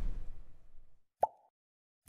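Animated end-card sound effects: a low whoosh fades out over the first second, then a single short pop about a second in, as an icon pops onto the screen.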